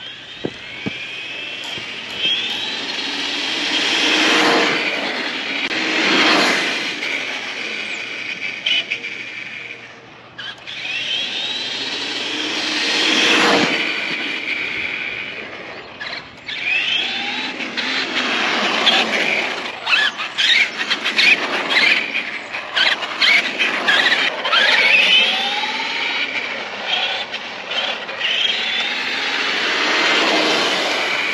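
Traxxas Rustler RC truck's electric motor and drivetrain whining at full speed, the pitch rising and falling as it passes close by twice. From about 17 seconds on it runs in short bursts of throttle, with a clatter of rapid ticks and rattles.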